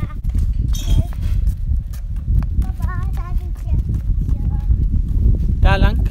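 Wind buffeting the phone's microphone, a steady low rumble, with footsteps on brick paving and faint voices; a child's voice rings out near the end.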